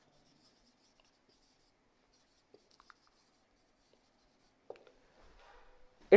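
Faint squeaks and taps of a marker pen writing on a whiteboard: a handful of short strokes.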